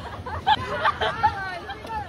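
Indistinct voices and chatter of several people, with short broken bits of talk, over a low steady rumble.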